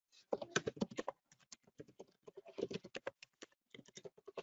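Typing on a computer keyboard: quick runs of keystroke clicks with short pauses between them as a line of text is typed.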